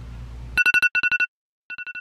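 Phone alarm beeping: a rapid run of electronic beeps at two steady pitches starting about half a second in. It breaks off into silence and starts again near the end.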